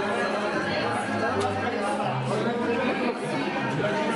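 Restaurant chatter: several voices talking over one another in a busy dining room, with background music playing underneath.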